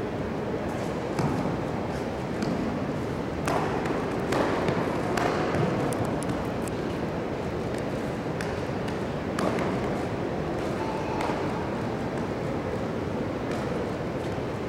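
Steady room noise of a large sports hall with scattered sharp slaps and thuds from a White Crane kung fu form: the performer's foot stamps on the mat and the snap of her uniform.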